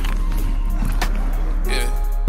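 Music with a heavy, steady bass and a few sharp percussion hits.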